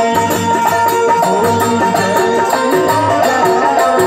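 Live Bhojpuri folk stage music: a keyboard melody over a repeating drum beat, loud and steady.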